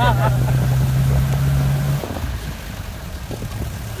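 Vehicle engine running with a steady low drone that falls away about halfway through as it eases off, leaving road and wind noise; a short horn toot sounds right at the end.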